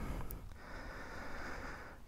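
A person breathing out faintly through the nose over a low, steady rumble, during a quiet pause.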